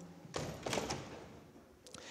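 Handling noise: a brief burst of rustling with a couple of light knocks about half a second in.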